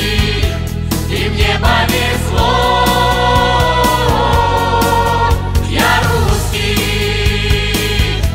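Mixed choir singing long, held wordless notes over a loud pop-rock backing track with a steady drum beat.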